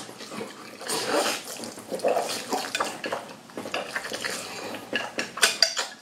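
Close-up eating sounds: thick noodles in black bean sauce being slurped and chewed in irregular wet bursts, with wooden chopsticks clicking against a ceramic bowl.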